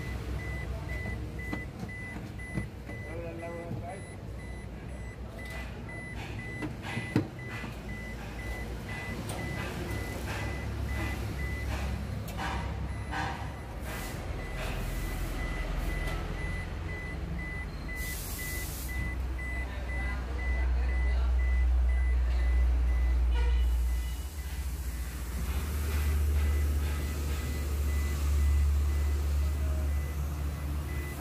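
A car's warning beeper sounding a steady series of high beeps inside the cabin. A low rumble grows louder from about two-thirds of the way in.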